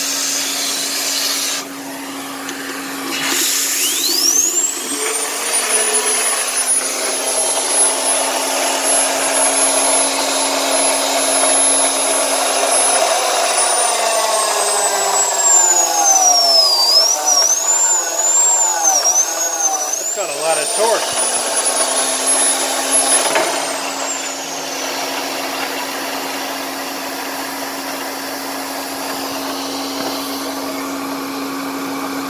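1962 Electrolux Model C-A canister vacuum running with a steady hum, driving the air turbine of an Electrolux Turbo Rug Washer, a high-speed turbine geared down to turn the brush slowly. A few seconds in the turbine spins up to a high whine and holds. Midway the whine sags and wavers, climbs once more, then winds down a little past twenty seconds, leaving only the vacuum's hum.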